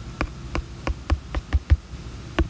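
Taps on a tablet's glass touchscreen as dots are placed one at a time, roughly three to four short taps a second at an uneven pace.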